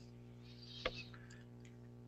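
Faint steady electrical hum on an open conference-call audio line, with one sharp click a little under a second in.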